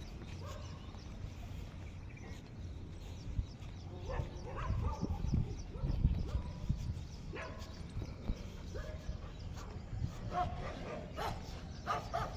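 A dog making short barking and whining calls, bunched about four to seven seconds in and again near the end, over a steady low rumble of wind on the microphone.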